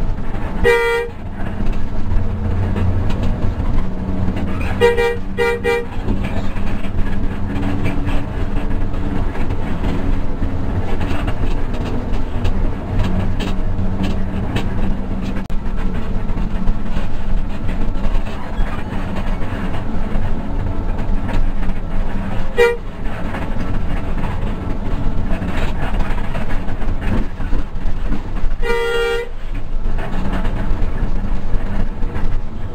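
Hino RK8 260 bus under way, its engine and road noise heard steadily inside the cabin. A horn sounds in short blasts: once about a second in, twice in quick succession around five seconds, briefly past the middle, and once near the end.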